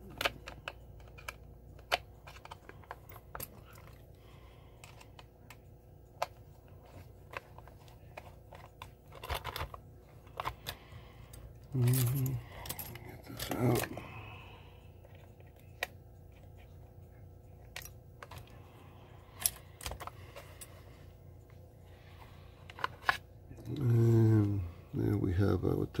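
Scattered light clicks and taps of hands working the shell off a Lionel 2046W whistling tender and handling its screws. Two short vocal sounds from the man about halfway through are the loudest moments.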